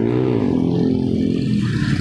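A car passes close by on the road, its engine note rising briefly and then falling away as it goes past, over road noise.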